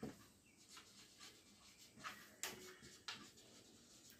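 Marker pen writing on paper: faint, brief scratchy strokes, a few of them standing out, as a word is written.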